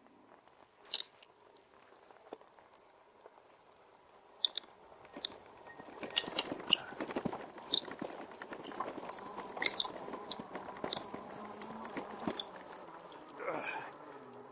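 Fat tyres of a RadMini electric bike rolling over rough, bumpy grass. For the first six seconds there are only a few sharp clicks and brief high squeaks. Then a dense crunching rattle of the bike jolting over the bumps begins and keeps on.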